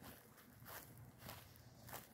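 Faint footsteps on grass, about two steps a second.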